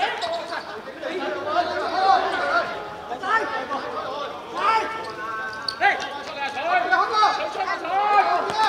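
Men shouting and calling out across the court during a football match, voices overlapping throughout, with a few sharp knocks in between that fit the ball being kicked.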